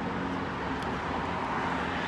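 Steady urban road-traffic noise: a continuous low rumble and hiss with no distinct events.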